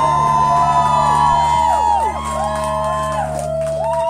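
Electric guitar tones held and ringing out over a steady amplifier hum as a live rock song closes, with the crowd whooping and cheering over it.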